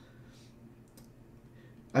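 A quiet pause: faint room tone with a few faint clicks.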